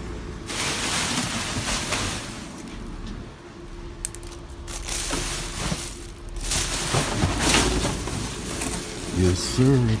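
Plastic bags and cardboard rustling and crinkling in several bursts as things in a dumpster are shifted and handled, with a sharp click partway through; a man's voice comes in near the end.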